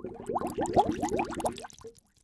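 A bubbling sound effect: a quick run of short rising bloops, about seven a second, fading out near the end.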